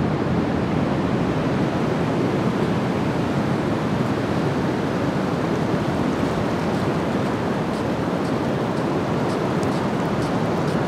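Steady wash of ocean surf, with wind rumbling on the microphone.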